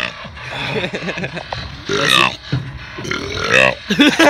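A young man burping loudly on purpose: a short burp about two seconds in, then a longer one that drops in pitch near the end.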